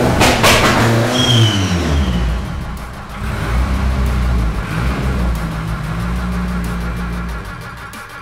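Volkswagen Parati's engine being revved up and down in several blips, then running at a steadier, lower speed, with background music under it; the engine sound fades out near the end.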